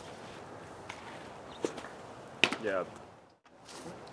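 A baseball smacking into a catcher's mitt with a sharp pop about two and a half seconds in, the loudest sound, preceded by a couple of fainter clicks. The sound cuts out briefly near the end.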